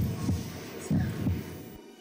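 Heartbeat sound effect: two low double thuds, lub-dub, a little under a second apart, which cut off just before the end.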